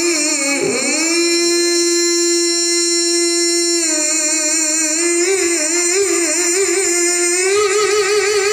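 A male qari reciting the Quran in melodic tilawah style into a handheld microphone. A brief dip in pitch comes about half a second in, then one long steady note is held for nearly three seconds, then wavering ornamented runs step higher near the end.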